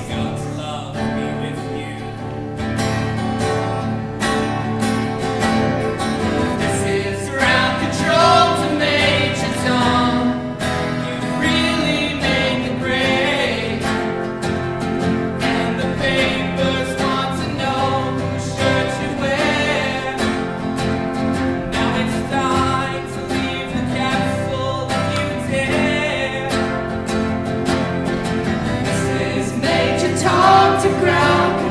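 Two acoustic guitars playing a song live, with singing voices coming in about seven seconds in and carrying on over the guitars.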